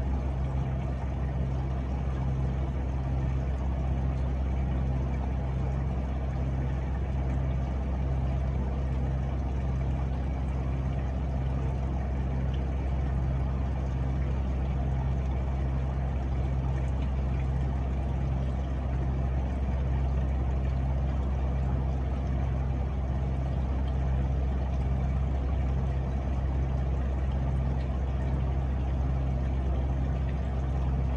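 Gasoline pouring in a steady stream from a fuel tank's sending-unit opening and splashing into a drain bucket, over a steady low mechanical hum that pulses evenly.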